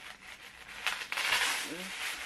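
Rustling and crinkling of blue wrapping paper as a wrapped parcel is handled and pulled at, louder from about a second in, with a brief voice near the end.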